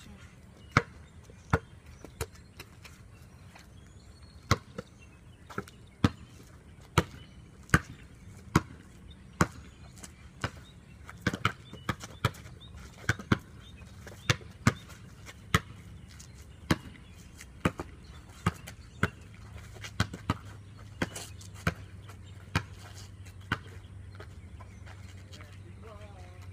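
Basketball dribbled on a concrete court: a steady run of sharp bounces about one a second, coming quicker for a few bounces midway and stopping a couple of seconds before the end.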